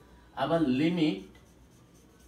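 Marker pen writing on a whiteboard, faint, with a man speaking a short phrase about half a second in.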